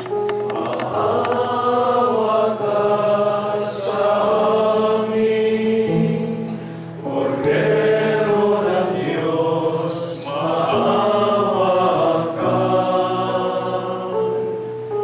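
A group of men singing a slow, chant-like liturgical hymn together, in phrases a few seconds long with held notes and brief pauses between them.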